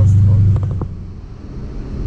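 Mercedes E550 coupe's V8 and road noise heard from inside the cabin at highway speed: a steady low drone that eases off about half a second in. A few short clicks follow it.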